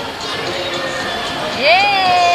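Busy ice rink crowd noise, then about one and a half seconds in a child's high voice rises sharply into one long, drawn-out cry.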